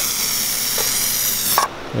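Aerosol can of trim paint spraying onto car trim: a steady hiss that cuts off suddenly about a second and a half in.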